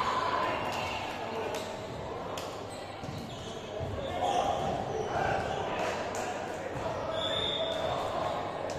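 Reverberant sports hall with many players' voices overlapping and scattered sharp thuds of volleyballs being struck and bouncing on the court floor. A short high squeal comes near the end.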